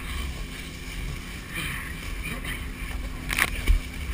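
Wind rushing over the microphone and water hissing under a pair of water skis towed across a lake, with a steady low rumble. A short, sharp, louder burst comes about three and a half seconds in.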